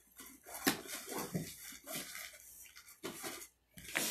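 Light clinks and knocks of small objects being handled close to the microphone, a little over half a second in, then on and off, with a sharper one near the end.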